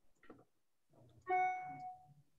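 A single chime-like tone, struck once a little past halfway and fading out over about half a second, after a few faint clicks.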